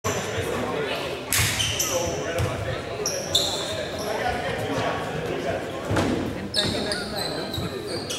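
Basketball bouncing on a hardwood gym floor, with short high sneaker squeaks and echoing chatter in a large gym.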